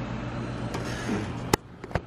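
Pool pump motor running with a steady hum, while the filter gauge reads no pressure; the owner suspects something has stopped working. The hum cuts off suddenly with a sharp click about three-quarters of the way in, and a second click follows.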